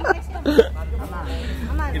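Quiet background voices of people talking, a few short faint utterances over a steady low rumble.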